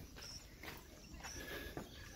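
Faint outdoor background with a few soft footsteps on a gravel floor and a couple of brief high chirps.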